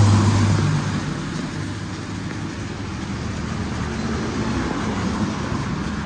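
Steady motor-vehicle road noise, an even rushing sound, with a low engine hum that fades out within the first second.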